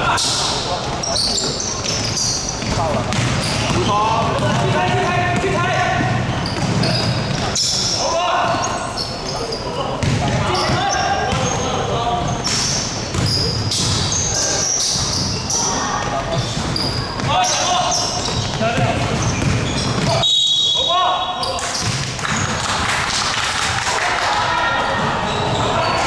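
A basketball bouncing on a wooden sports-hall floor during a game, mixed with players calling out to each other, all echoing in a large hall.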